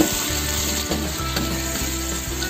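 Ground chili, shallot, garlic and kencur spice paste sizzling steadily in hot oil in a wok, stirred with a metal spatula.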